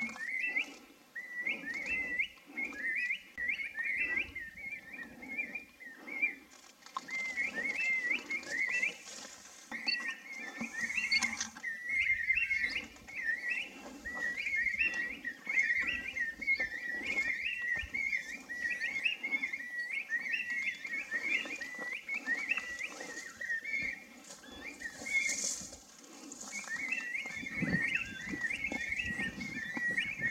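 A songbird singing: a near-continuous string of short, rapid warbled phrases, repeated over and over with only brief breaks.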